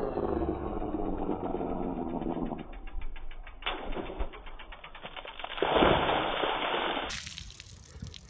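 Slowed-down slow-motion audio: deep, drawn-out, pitch-lowered tones, then a water balloon bursting on a screwdriver tip a little before halfway, followed by a louder slowed rush of splashing water. Normal-speed sound returns near the end.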